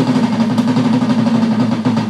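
Live rock band holding one sustained low note over a hissing wash of cymbals, the drum beats dropping back. Sharp drum hits return at the very end.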